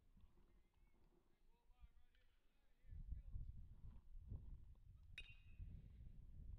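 Wind rumbling on the microphone, and about five seconds in a single sharp metallic ping with a short ring: an aluminium baseball bat hitting the ball for a ground ball to second base.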